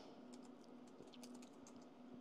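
Faint, scattered clicks of a computer keyboard and mouse being worked, over a faint steady hum.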